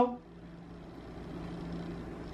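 Faint steady low rumble and hum with one constant low tone, growing slightly louder across the two seconds.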